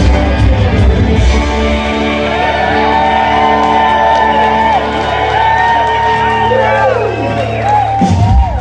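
Live rock band playing loud, with electric guitar. About two seconds in the band settles onto a long held chord over a steady bass note, and near the end the high notes bend and slide downward.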